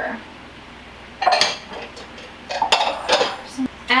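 A few short clusters of bowls and utensils clattering and clinking together, starting about a second in, as flour is tipped from a small bowl into a large mixing bowl.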